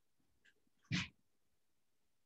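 A short, sharp puff of breath through the nose, like a snort or quick sniff, about a second in, preceded by a fainter little sniff.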